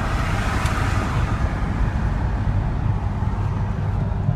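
Steady engine and road noise inside the cabin of a Mercedes-Benz SL on the move, a low even rumble with a soft hiss above it.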